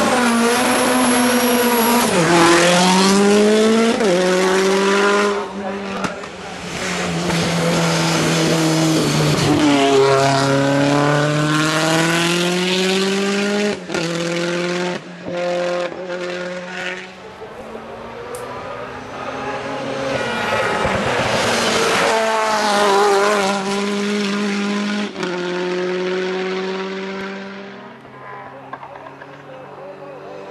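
Ford Escort WRC rally car's turbocharged four-cylinder engine at full throttle, pulling up through the gears. The note rises steeply, drops at each upshift and climbs again, with a few short breaks where the throttle is lifted. It grows fainter in the last third as the car pulls away.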